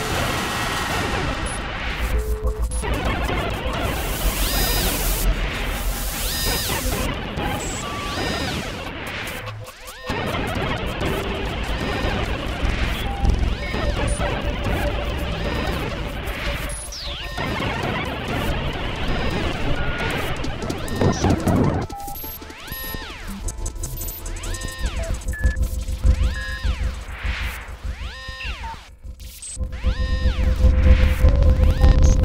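Experimental electronic glitch and noise music: a dense wash of noise that cuts out briefly a few times. About two-thirds of the way through it thins into held tones with short chirps repeating every second or two.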